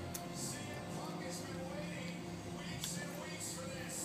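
Televised wrestling broadcast playing in the background: faint music and commentary over a steady low hum, with a few light clicks.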